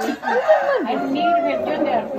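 Speech: voices talking.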